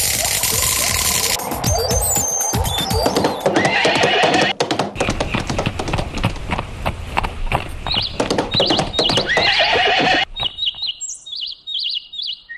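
A horse galloping, its hooves clattering in a fast run, with a horse whinnying, over music. About ten seconds in it drops to quieter birdsong with short high chirps.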